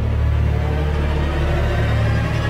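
Dramatic background score: a low, steady rumbling drone with faint held tones above it.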